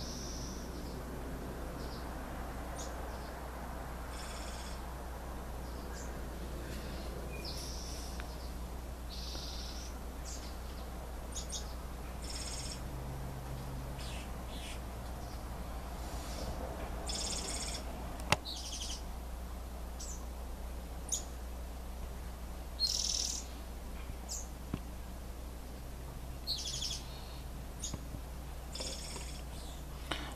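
Short, high-pitched bird chirps now and then over a steady low hum, with a single sharp click about eighteen seconds in.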